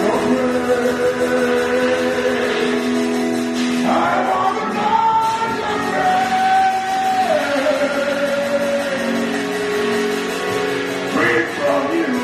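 A man singing a slow gospel worship song into a microphone over steady backing chords, holding long notes that slide between pitches, with one long held note from about four seconds in that steps down partway through.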